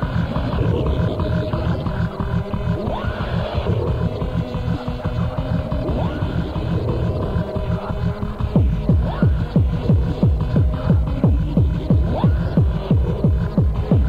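Hardtek (free-party tekno) track: a low, throbbing drone with a few rising sweeps, then a fast, steady kick drum comes in about eight and a half seconds in.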